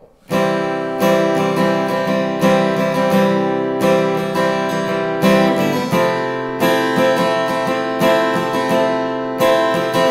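Cort cutaway acoustic guitar strummed in a steady rhythm, changing chord about six seconds in. The last chord rings out and dies away at the end.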